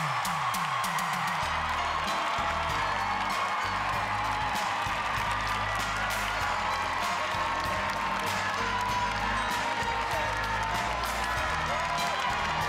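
Upbeat music with a stepping bass line plays over an audience clapping and cheering.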